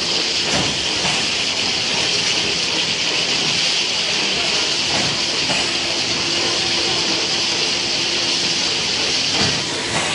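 Automatic cartoning machine running with its glass-vial infeed conveyor: a steady, even mechanical noise with a faint steady hum underneath and a few light knocks.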